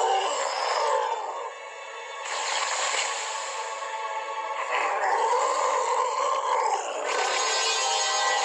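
A cartoon monster's vocal roars over a background music score: two long, noisy roars, the first about two seconds in and the second near the end, with a lower moan between them.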